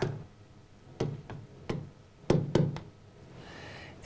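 A plastic stylus tapping on the glass of a touchscreen display while words are handwritten on it: about five sharp taps, between about a second in and halfway through.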